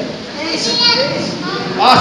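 Children's voices in a large hall, calling out answers from the congregation, fainter and higher than the adult speaker's voice that comes back near the end.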